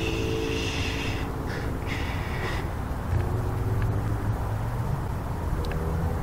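A drawn-out whispered 'shh' in the first second and a shorter hiss about two seconds in, over a steady low rumble of distant traffic that swells a little midway.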